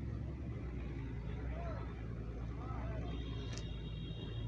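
Outdoor ambience: a steady low rumble with faint, distant voices in the middle. Near the end come a few high, steady tones and a brief click.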